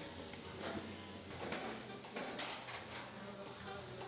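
Faint workshop sounds: soft metallic knocks and scrapes as a hanging spot-weld gun is handled against steel sill rails in a steel assembly jig, over a low steady hum.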